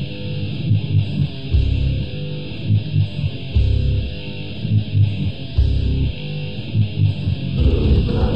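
Grindcore band music: a sparse passage of electric guitar with heavy low hits about every two seconds, the full band coming back in near the end.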